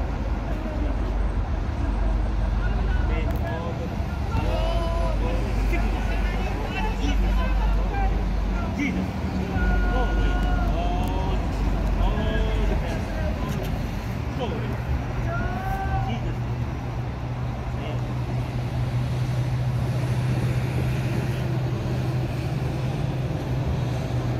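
Street traffic rumble with low, indistinct voices of people talking nearby; a steady low engine hum joins about two-thirds of the way through.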